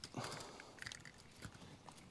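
Faint rustling and a few light clicks of small loose pieces, cut zip-tie ends among them, being gathered up off a truck seat by hand.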